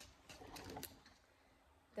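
Near silence, with a few faint crinkles of a paper burger wrapper being handled in the first second.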